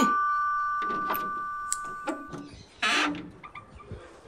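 Electronic doorbell chime ringing out: two steady tones fading away over about two and a half seconds. A brief noise follows about three seconds in, as the front door is opened.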